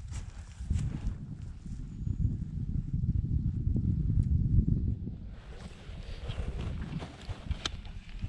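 Spinning reel cranked quickly while a hooked small pike is retrieved, a low rough rumble through the rod and reel. About five seconds in it gives way to lighter rustling, with a sharp click near the end as the fish is lifted out.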